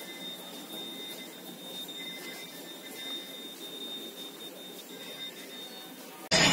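Spiral paper tube forming machine running: a steady machine noise with a thin, high-pitched whine held throughout.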